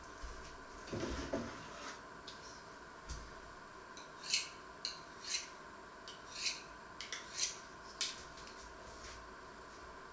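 Faint kitchen handling sounds from out of sight: a soft knock about a second in, then a run of short clinks and scrapes of dishes and utensils, roughly one every half second, from about four to eight seconds in.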